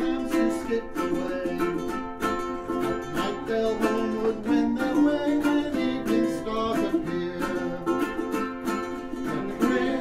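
Plucked string instruments strumming and picking the tune of a folk song in a steady rhythm, an instrumental passage between sung verses.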